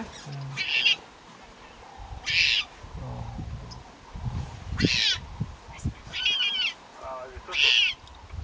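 Leopard cub crying: five short, high-pitched calls spaced about a second to a second and a half apart, some dropping in pitch.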